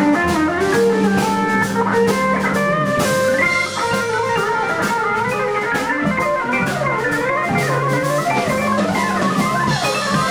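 Electric guitar solo on a Futhark guitar, with many bent and sliding notes, played over a drum kit and a Suzuki SK1 Hammond organ in a live blues band.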